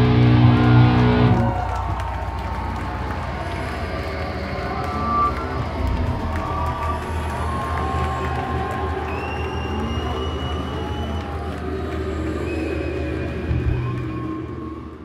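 A live heavy metal band's last chord, played on distorted guitars, holds and then cuts off about a second and a half in. Club crowd cheering and shouting follows.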